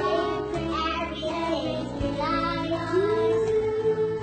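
A song: a singing voice carrying a melody over instrumental backing, holding one long note in the second half.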